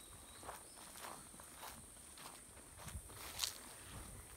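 Faint footsteps on dry grass and fallen leaves, about two steps a second, with a steady high insect-like hiss behind them.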